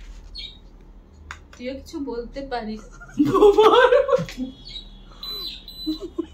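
People's voices talking, loudest about three seconds in, with a faint steady high tone near the end.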